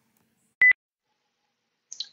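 A single short, high-pitched electronic beep, a steady tone about a sixth of a second long, with a click at its start and end.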